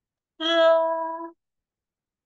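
A woman's voice holding a single 'a' syllable at a steady high pitch for about a second, the level first tone of a Mandarin syllable sounded out as a pronunciation example. A breathy start of the same syllable again comes near the end.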